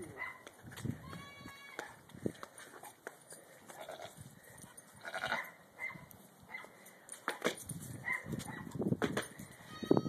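Goats bleating, one clear bleat about a second in, amid scattered knocks and shuffling.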